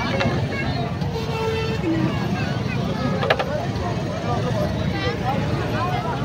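Many people talking at once in a busy outdoor crowd, over a steady low rumble, with one sharp click about three seconds in.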